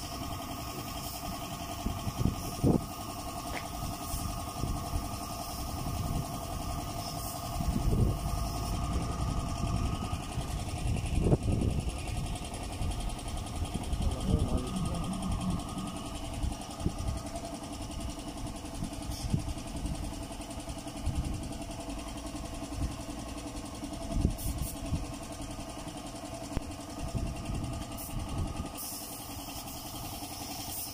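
Air compressor running steadily to feed a paint spray gun, with scattered knocks over the drone.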